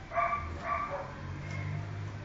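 Belgian Malinois puppy barking twice in quick succession, two short yapping barks about half a second apart.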